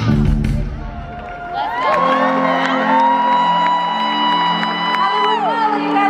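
Live band music at a concert: a loud beat for about the first second, then a sustained low chord under a long held high note that slides up, holds, and falls away near the end, with crowd whoops.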